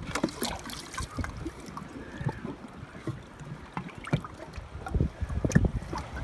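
A knife blade clicking and scraping against barnacles on a hawksbill sea turtle's flipper as they are pried off, in scattered short clicks, over a steady low rumble of wind and water at the boat's side.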